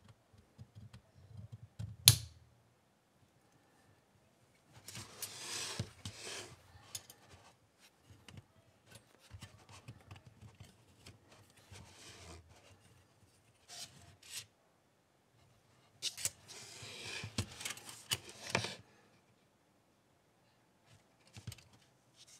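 Folding metal camp stove being assembled: one sharp click about two seconds in as a side wing snaps into place, then two stretches of metal rods sliding and scraping through the stove's side holes, with a few light ticks between.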